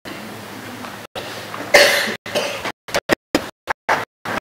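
Steady hiss broken by a short, loud burst of noise a little under two seconds in, with the sound cutting out to silence in brief gaps several times, more often near the end.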